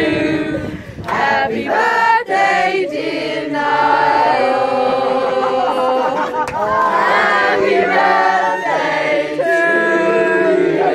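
A group of people singing a song together, many voices at once, with a brief dip about a second in and longer held notes in the second half.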